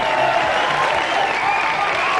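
Studio audience applauding, with voices shouting among the clapping.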